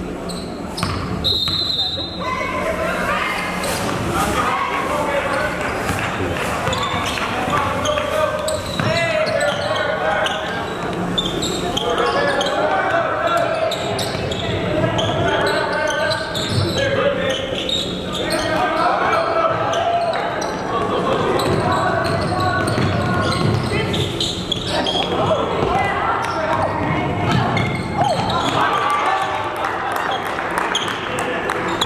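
Basketball game sounds in a gym: a short whistle blast about a second in, then a basketball bouncing on the hardwood floor amid steady, indistinct voices.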